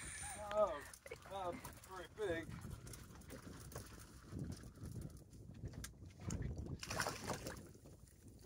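A faint voice in the first couple of seconds, then low wind noise buffeting the microphone, swelling in a stronger gust about six seconds in.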